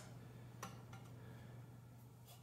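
Near silence with two faint metallic clicks, about half a second in and again about a second in, from a trumpet's brass tuning slide being pulled and fitted; a low steady hum underneath.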